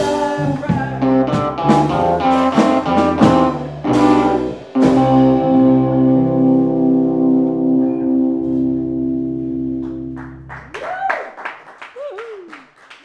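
Live electric guitar, bass and drums playing the song's closing bars, ending on a held chord that rings out and fades over about six seconds.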